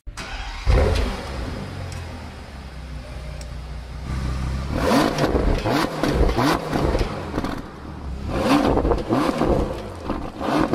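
Bentley Continental GT engine starting with a sudden loud burst about a second in and settling to a steady idle. From about halfway it is revved in a run of quick blips, the exhaust rising and falling in pitch, with another burst of revs near the end.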